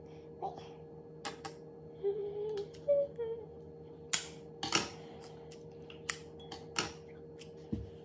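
Scissors snipping through a thin plastic drinking straw filled with set jelly: a handful of short, sharp cuts spread over the seconds, the loudest about four seconds in. A short murmur of voice comes a couple of seconds in, over a faint steady hum.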